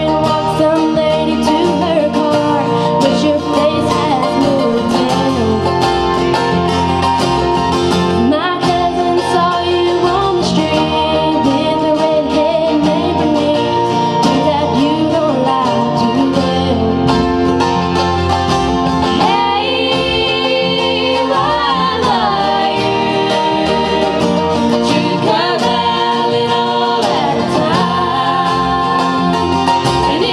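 A small acoustic band playing live, with singers on microphones over strummed acoustic guitar, a mandolin, upright double bass and a box drum.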